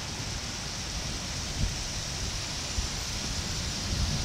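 Heavy rain pouring steadily onto a flooded street, with a low uneven rumble underneath and a couple of brief thumps.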